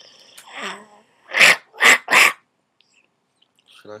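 A girl's voice making a short falling vocal noise, then three loud breathy huffs in quick succession, half a second apart, rough and sneeze-like rather than words.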